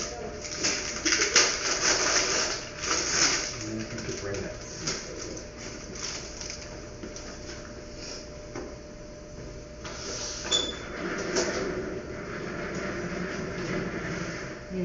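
Low, indistinct voices over clicks and rustling from handling in a small room, busiest in the first few seconds, with a faint steady hum. A short, high electronic beep sounds about ten and a half seconds in.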